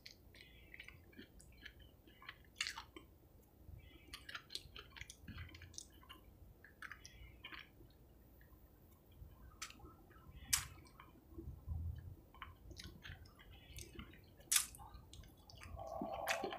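A person eating fried chicken by hand: faint chewing, with short clicks and smacks at irregular intervals.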